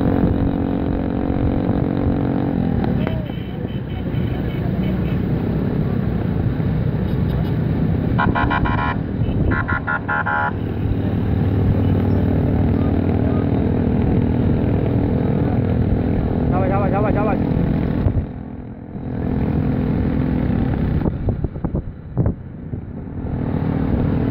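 Motorcycle engine running steadily while riding alongside, heard close with wind noise on the microphone, easing off briefly a few times near the end.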